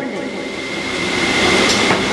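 A steady rushing noise with a faint high steady tone under it, swelling a little toward the end.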